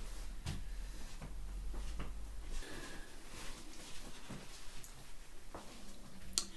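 Light handling noises: a few small knocks and clicks and the rustle of kitchen paper towel being fetched and handled.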